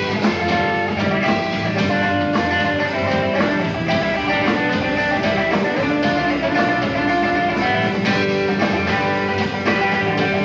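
Live band music led by an amplified electric guitar played up the neck, over a steady beat.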